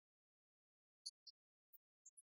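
Near silence, broken only by three faint, very short high-pitched ticks about a second in.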